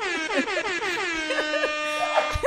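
An air horn sound effect sounding once as one long blast. It starts abruptly, slides down in pitch over about the first second, then holds a steady note until it stops at the very end.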